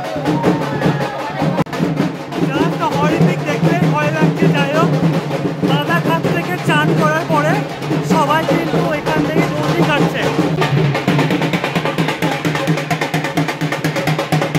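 Fast, continuous drumming with the voices and shouts of a crowd over it.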